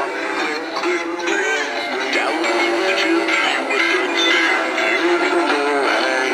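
Animated singing Santa figures playing a Christmas song with a sung, electronic-sounding vocal through small built-in speakers. The sound is thin and tinny, with no bass.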